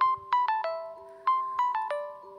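A short melody of quick ringing notes, played in two runs of four, each note starting sharply and its tone lingering.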